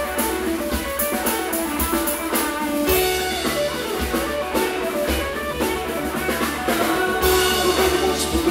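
Live soul band playing an instrumental passage: electric guitar to the fore over bass and drum kit, with a steady beat.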